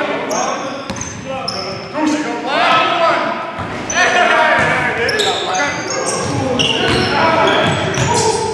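Live basketball play in a gym: the ball bouncing on the hardwood court, sneakers squeaking on the floor and players calling out, all echoing in the large hall.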